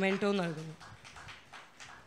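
A woman's voice through the hall's microphone: one short, drawn-out syllable that falls in pitch, followed by low room sound with a few faint soft noises.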